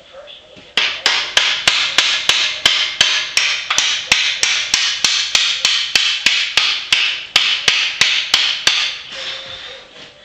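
Hammer striking metal tubing in a rapid, steady run of blows, about four a second, starting just under a second in and stopping about nine seconds in.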